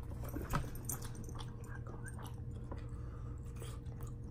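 Close-miked chewing of instant noodles, soft and quiet, with a few faint wet mouth clicks, the clearest about half a second in, over a steady low hum.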